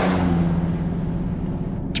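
A car's engine hum and road rush, the rushing fading away over the two seconds while a steady low hum holds.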